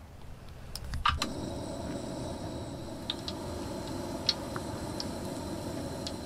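Donut-hole dough frying in hot oil on a propane-fired skottle: a steady sizzle with scattered pops, starting about a second in after a couple of sharp clicks.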